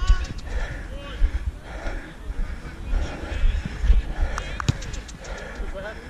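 Buffeting rumble of wind and body movement on a body-worn camera while its wearer runs on an artificial football pitch, with running footfalls and faint distant shouts of other players. A couple of sharp knocks come about four and a half seconds in.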